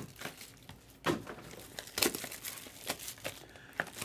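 Foil trading-card pack wrapper crinkling as it is handled, in scattered short crackles.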